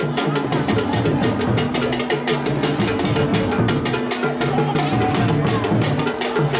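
Traditional Akan drumming: a fast, steady clicking beat over deeper drums, with voices in the crowd underneath.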